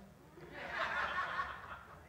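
Audience in a large room chuckling and laughing softly, swelling about half a second in and dying away before the end.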